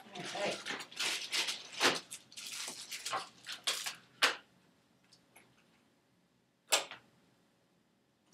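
Small objects being handled and set down on a tabletop: a quick run of clicks and clatters for about four seconds, then quiet, then one sharp knock near the end.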